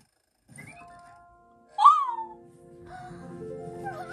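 Animated-episode soundtrack: a short, loud, high swooping sound about two seconds in, then music with held notes building up.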